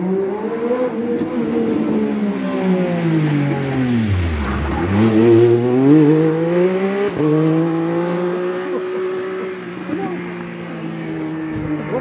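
Racing sidecar outfit's motorcycle engine passing close: the revs fall off as it slows, dropping low about four and a half seconds in, then climb as it accelerates away and hold a steady note as it recedes.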